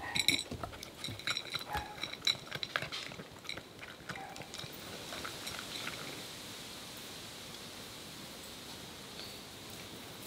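Dry dog kibble clinking and rattling against a ceramic bowl, a quick run of small clicks over the first four seconds or so, then only a faint steady hiss.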